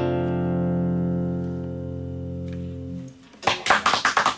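Acoustic guitar's final chord ringing out and slowly fading over about three seconds: the close of the song. Hand clapping breaks out near the end.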